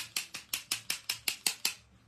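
Rapid, even clicking of a white Molotow splatter pen, about five or six clicks a second, each click flicking specks of white acrylic paint onto the card as snow; the clicking stops shortly before the end.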